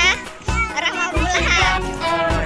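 A children's song with singing, mixed with children's voices.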